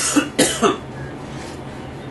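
A person coughing: one cough at the start and two more in quick succession about half a second in, over a steady low room hum.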